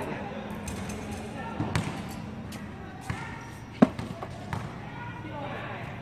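Basketball bouncing on a hard court, a few scattered bounces, the sharpest and loudest about two thirds of the way through.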